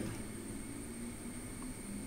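Steady low background hiss with a faint hum: room tone, with no distinct handling sounds.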